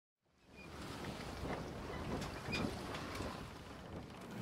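Steady rushing noise that fades in just under half a second in, with a few faint ticks through it.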